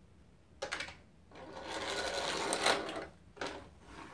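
Toy car whirring for about two seconds, growing louder and then dropping away, after a short clatter about half a second in and before a brief knock near the end.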